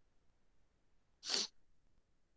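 A single short, sharp, hissy burst lasting about a quarter of a second, a little past the middle, against quiet room tone.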